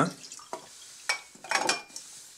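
The last of an iced green tea trickling and dripping from a tilted aluminium drink can into a glass mug, in a few short splashes.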